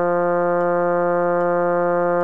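Synthesizer choral part-learning track holding one long, steady note on the sung syllables of 'Amen', with no change in pitch or loudness.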